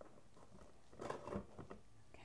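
A cardboard box being handled and turned over: a short run of faint rustles and light taps of cardboard and paper about a second in.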